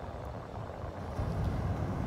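Small ocean waves breaking on a sandy beach, an even wash of surf, with wind rumbling on the microphone. The low rumble grows stronger about halfway through.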